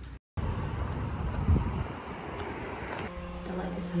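Outdoor street noise: a low rumble with a louder swell about one and a half seconds in. It cuts to a quieter room, where a woman starts speaking near the end.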